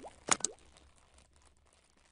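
Two short pops from an animated intro's sound effects, about a third of a second apart at the start, with a faint tail fading out after them.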